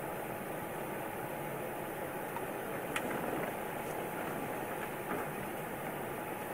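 Steady rushing background noise, with a few faint, short clicks from hands working plant pieces over stainless steel bowls.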